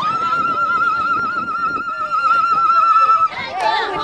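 A woman ululating: one long, high warbling trill held on a single pitch for about three seconds, then breaking off into the chatter of other voices.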